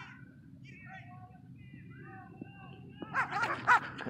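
Dogs barking: a sudden run of three or four loud barks about three seconds in, after faint wavering calls in the background.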